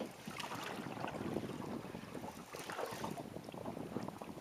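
Wind buffeting the microphone, with choppy sea water lapping and slapping against a small boat.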